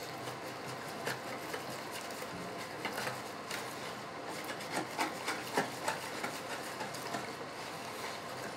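Hand stirring a thin flour-and-yeast batter in a plastic bowl: soft, irregular clicks and scrapes against the bowl over a low steady background.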